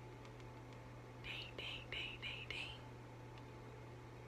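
A woman whispering softly: five short breathy syllables, starting about a second in, over a steady low hum.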